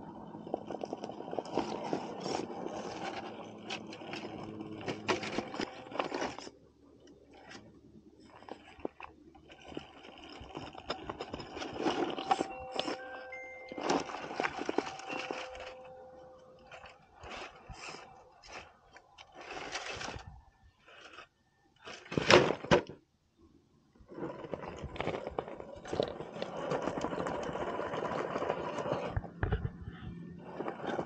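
An Axial SCX10 Pro scale RC rock crawler's electric motor and geartrain whining in bursts as it crawls over rock, with its tyres scraping and crunching on the stone. There is one sharp knock about two-thirds of the way through.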